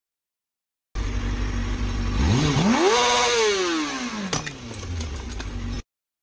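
Sport motorcycle engine idling, revved once with the pitch rising and then falling back. This is followed by a sharp knock, the car's side mirror being struck. The sound cuts in about a second in and cuts off abruptly just before the end.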